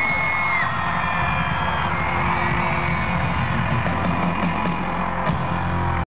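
Live band music in a large hall, heard loud through a camera microphone that cuts off the highs, with crowd whoops over it and a high held cry that ends under a second in.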